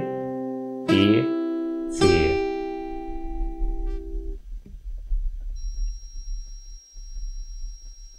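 Acoustic guitar playing a C major barre chord (A-shape, root on the A string) one string at a time: single notes are picked about one and two seconds in and ring on together with the earlier ones. The chord is damped suddenly about four seconds in, leaving only faint handling noise and a low hum.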